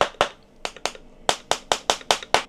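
Handheld Tesla coil firing, its spark discharging into the air as a rapid, irregular series of sharp snaps, about five a second.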